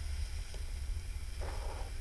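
Steady low background hum, with a faint, brief rustle about one and a half seconds in as fingers handle a plastic action figure's rubbery coat.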